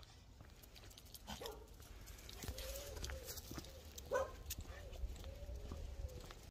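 Small dog whining in a series of short, wavering cries, over a low outdoor rumble.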